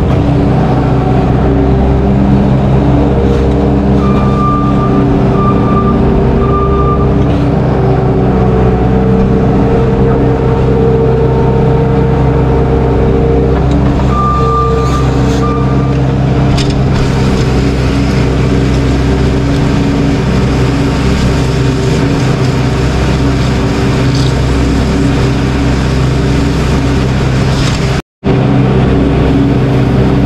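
Loader engine running steadily under working load while scraping manure slop down a concrete barn alley. A reversing alarm beeps in short runs about four seconds in and again about fourteen seconds in. The sound cuts out for a split second near the end.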